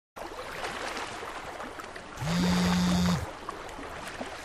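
A mobile phone buzzes once for about a second on a wooden side table, a steady low buzz that starts and stops cleanly: an incoming call. Underneath is a faint steady wash of lake water.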